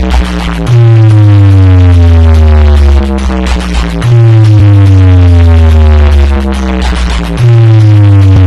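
Huge DJ speaker stack playing electronic music very loud, dominated by a deep bass note that slides downward in pitch and restarts about every three and a half seconds, with busy beats above it.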